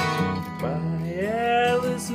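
Acoustic guitar strummed, with a man's voice sliding up into a long held sung note.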